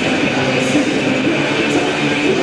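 Metal band playing live, with heavily distorted electric guitars forming a loud, dense, unbroken wall of sound.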